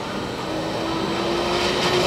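Alfa Laval stainless centrifugal pump and its electric motor speeding up toward full speed while cavitating, its running noise growing steadily louder. A steady motor whine comes in about half a second in and edges up in pitch. The loud, rough running is a key sign of cavitation: the pump is starved at its inlet, with inlet pressure below zero.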